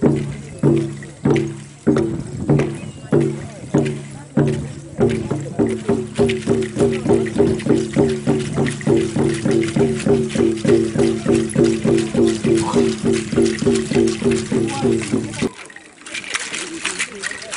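Drums beaten for a group dance in a steady beat of about two strokes a second, quickening to about four a second some five seconds in, then stopping abruptly near the end.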